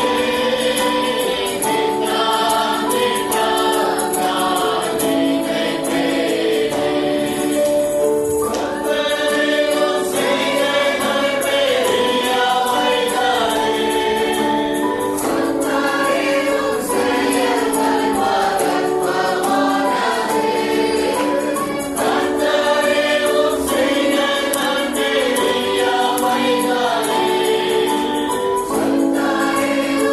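Gospel choir singing in harmony over instrumental backing, with a tambourine-like shaken percussion keeping a steady beat.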